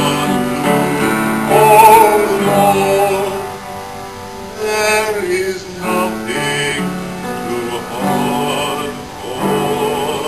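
Live performance of a sing-along song: singing voices over instrumental accompaniment.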